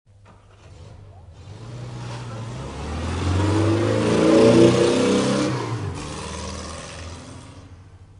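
A car engine accelerating, its pitch stepping up as it grows louder to a peak about halfway through, then fading away.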